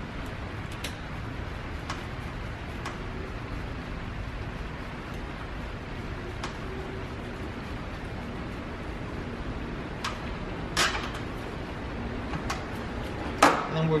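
Faint clicks and taps of a refrigerant hose's brass fitting being handled and threaded onto a vacuum pump's inlet port, over steady room noise, with two sharper clicks near the end.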